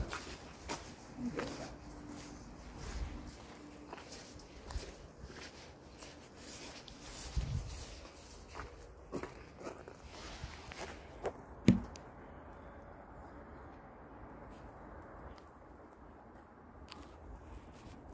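A person's footsteps while walking, irregular steps and small knocks, with one sharper click just before twelve seconds in, after which the steps stop.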